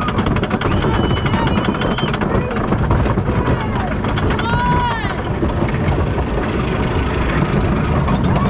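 Wooden roller coaster train passing over the crest of the lift hill and rolling on: a steady rumble with rattling clatter of the cars on the wooden track. Riders' voices ride over it, with one rising-and-falling whoop about halfway through.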